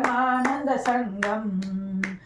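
Devotional Sanskrit hymn chanted to steady hand clapping that keeps time, a few claps a second; the chanted line ends on a long held note in the second half.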